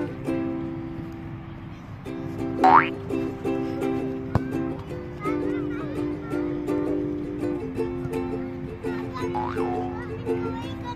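Light, upbeat background music with ukulele, with a quick rising whistle-like sound effect twice: once about two and a half seconds in, and again near the end.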